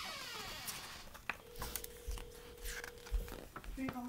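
A child's voice making a high whistle-like glide that falls steeply in pitch over about the first second, then light taps and rustles of a paperback picture book being handled, with a faint steady tone in the middle.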